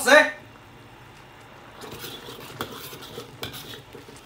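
A large metal ladle scraping and clinking against a wok while stirring a sauce that is reducing over high heat. The sound is quiet at first, then busier with separate clinks from about two seconds in.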